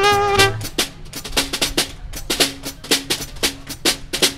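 Jazz combo: trombone and saxophone finish a held note, and then the drum kit takes a break of rapid snare and cymbal strokes, with short low notes underneath, until the horns come back in at the very end.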